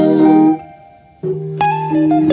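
A small soul band playing without vocals: an electric guitar picking a melody over held Rhodes electric piano chords. The band stops together about half a second in, leaving a brief near-silent pause, then comes back in.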